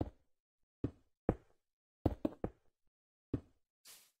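A series of sharp knocks, about seven, irregularly spaced, with a quick run of three about two seconds in. A soft hiss starts near the end.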